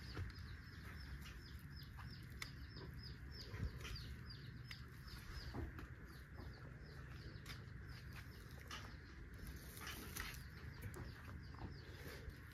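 Faint, rapid run of short, high, falling bird chirps that thins out after about five seconds, over a low steady rumble. Light rustles and snaps of dry rice straw come from straw mushrooms being picked by hand from a straw bed.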